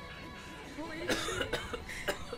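A person coughing, a couple of short coughs about a second in, over low voices and faint music.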